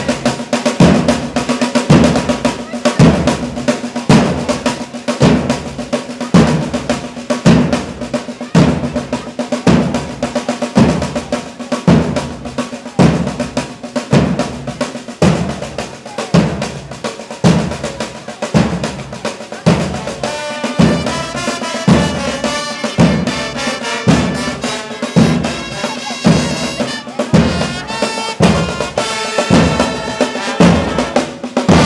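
Marching band drum line playing a march: snare drums rolling over steady bass-drum strokes about once a second. About twenty seconds in, brass instruments join with a melody.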